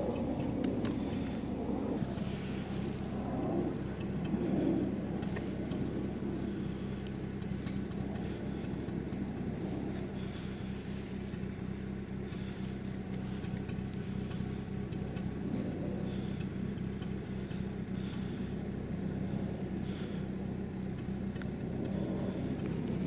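Steady low hum of an idling engine, with faint scratching as a fingertip draws letters in snow, a little stronger a few seconds in.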